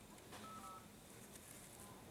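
Near silence, with a faint short electronic beep of two tones together about half a second in.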